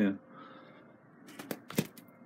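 Two short handling clicks about a third of a second apart, near the end of a near-quiet stretch.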